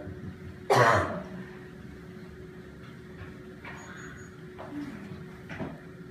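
One short, sharp cough close to the microphone, about a second in, over a steady faint hum.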